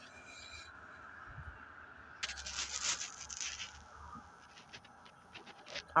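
Faint scratchy rustling that starts suddenly about two seconds in and thins out: compost being handled and spread around plastic grow bags.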